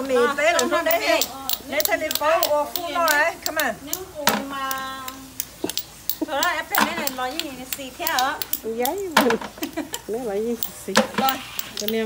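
Several voices talking over frequent sharp clicks and taps of metal spoons against snail shells.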